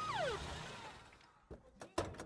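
A warbling tone gliding up and down fades out in the first half second. Near the end come a few clicks and then a sharp clack, the loudest sound, as a van's side door is unlatched and opened.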